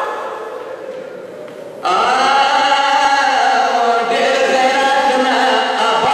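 A man's voice chanting a Pashto noha, a mourning lament, in long melodic phrases. A held note fades away over the first two seconds, then a new phrase starts abruptly and carries on strongly.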